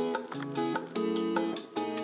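Background music led by a plucked guitar, with notes changing about every half second.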